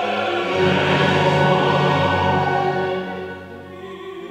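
Symphony orchestra and mixed choir performing a loud, full passage together; it swells about half a second in and dies down near the end.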